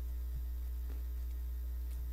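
Steady low electrical mains hum in the microphone recording, with no other sound on top of it.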